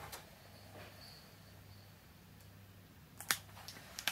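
Quiet room tone with a faint steady low hum, broken by a short sharp click a little over three seconds in.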